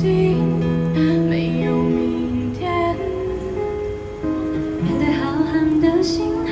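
Live pop ballad: women singing into microphones with steady acoustic guitar and held accompaniment notes beneath, amplified through a small PA.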